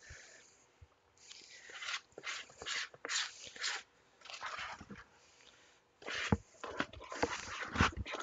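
Stiff chocolate cookie dough being stirred and scraped by hand with a scoop in a plastic mixing bowl, in a series of irregular noisy strokes; the dough is so thick it is hard work to mix.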